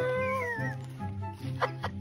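Background music with a steady low beat. Over it, one long, wavering, high-pitched cry sounds through the first second, and a few short vocal bursts come near the end.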